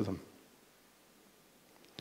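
A man's voice finishes a word, then a pause of near silence follows, broken only by a faint click near the end.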